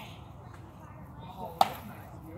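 A single sharp crack of a sword blow landing on a shield or armour during armoured sparring, about one and a half seconds in.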